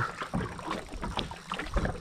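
Open-water ambience on a bass boat: wind on the microphone and small waves lapping at the hull, with scattered faint ticks.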